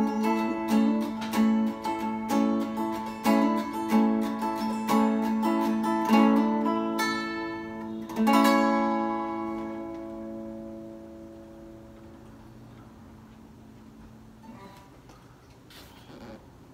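Guitar strummed in quick regular strokes, ending the song on one last chord at about eight seconds that is left to ring and slowly fade out.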